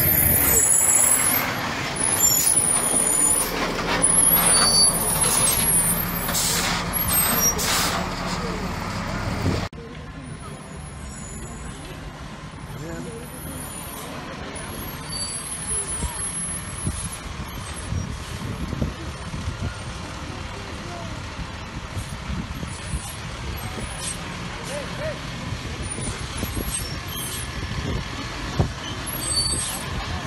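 Fire engines running steadily in the open, with hissing and several sharp cracks in the first few seconds; about ten seconds in the sound cuts to a quieter, steady low rumble.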